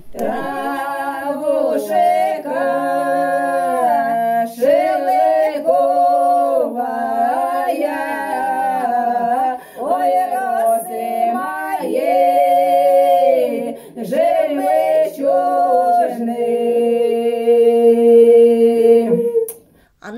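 Several women singing a folk song unaccompanied, in several voice parts. The phrases are long and held, with short breaths between them, and the song closes on a long sustained note that stops sharply near the end.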